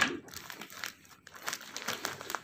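A foil-lined courier packet crinkling and tearing as it is pulled open by hand, in a scatter of irregular crackles.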